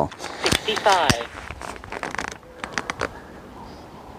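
Scattered sharp mechanical clicks and clacks from a PCP air rifle's action being handled, spread over the first three seconds, with a few words spoken early on.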